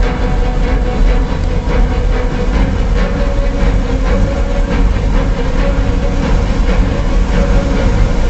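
Outdoor show soundtrack played loud over large loudspeakers: a deep, steady rumble with a held tone above it and some music underneath.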